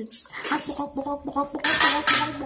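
Metal cookware clinking and scraping against a metal soup pot, with a louder noisy rush near the end.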